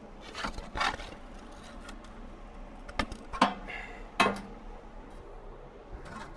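A scraper drawn across a ballistic clay backing block in about five short scraping strokes. The clay is being scraped level before the back-face deformation craters are measured.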